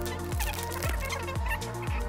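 Background music with a steady kick-drum beat, about two beats a second, over a sustained bass line.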